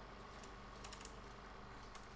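Faint room tone with a steady low hum, and a few soft clicks about a second in and again near the end.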